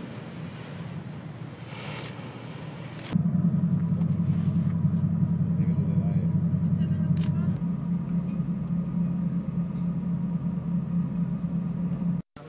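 Wind and water noise for the first few seconds, then, from an abrupt cut about three seconds in, a loud, steady low engine rumble.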